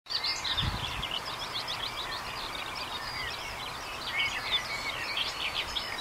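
Several songbirds singing at once, many overlapping short chirps and trills, over a steady outdoor hiss. A brief low thump comes just under a second in.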